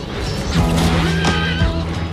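A horse whinnying over loud dramatic music with a steady low note; the wavering call comes about a second in.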